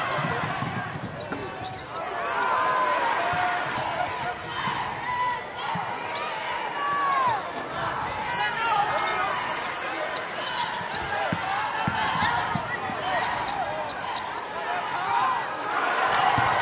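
Live basketball game sound on a hardwood court: many short sneaker squeaks, a ball bouncing, and the voices of players and crowd in a large arena. One sharp, loud slap comes about two-thirds of the way through.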